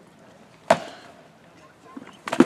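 A single sharp crack of a rattan sword blow landing in armoured combat, about two thirds of a second in, with a short ring after it.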